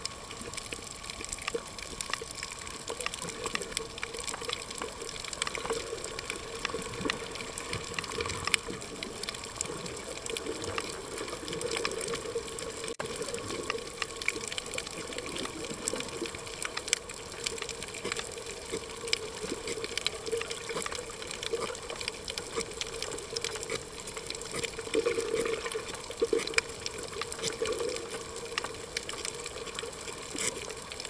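Underwater sound picked up by a submerged camera over a coral reef: a steady rushing water noise, sprinkled with many small clicks.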